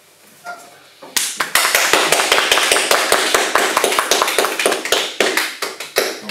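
Small audience applauding: a burst of clapping starts about a second in and thins out near the end.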